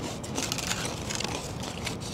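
Faint crunching as crispy fried chicken skin is chewed, small crackles over a steady background noise.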